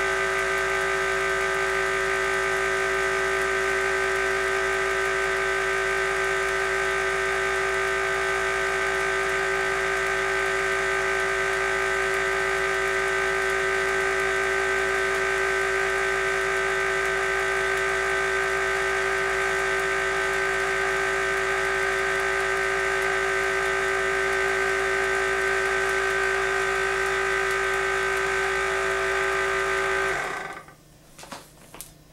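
Van de Graaff generator running: its electric motor and belt make a steady whir with a constant hum tone, as the dome holds a charge strong enough to make a wig's hair stand on end.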